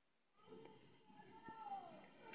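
A faint animal call, one drawn-out note falling in pitch, comes about a second after the sound cuts in from dead silence.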